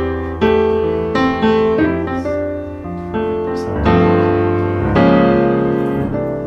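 Background piano music: slow chords and melody notes, each struck and left to ring.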